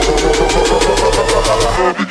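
Techno track in a DJ mix: fast, even hi-hats over a steady, gritty, engine-like bass drone, with the bass cutting out near the end as the track breaks down.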